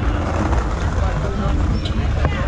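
People talking in the background over a steady low rumble.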